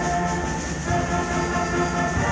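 Student concert band of brass and woodwinds playing held chords, moving to a new chord about a second in.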